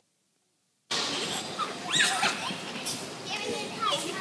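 Dead silence for just under a second, then the hubbub of an indoor children's play area: children's voices and shouts over background chatter.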